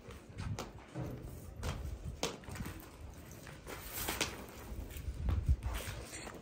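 Footsteps on concrete paving stones: a few light, irregular steps over a low rumble on the microphone.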